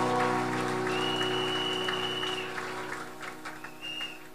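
Audience applause as the music's last held chord fades away, the clapping thinning out to a few scattered claps near the end. A single high, steady tone sounds for about a second and a half partway through.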